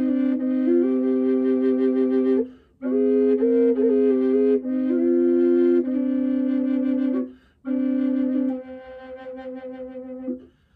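Contrabass Native American style aeolian drone flute of aromatic cedar and buckeye burl, with its cork removed so that the drone chamber sounds a steady low C under a melody played on the other chamber. It is played in three breath phrases, with short pauses about two and a half and seven and a half seconds in, and the last phrase fades softer.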